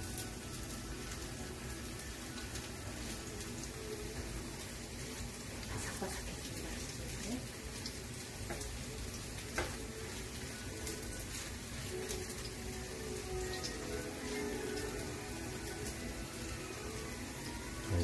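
Potato-and-vegetable pancakes frying in plenty of oil in a frying pan: a steady sizzle with scattered small pops and crackles.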